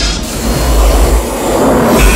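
Intro sound effect: a loud, rushing roar with a heavy deep rumble underneath, swelling again near the end.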